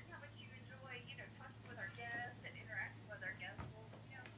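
Faint voice of the caller on the other end of a phone call, heard through the cell phone's earpiece, over a steady low hum. A soft tap comes near the end.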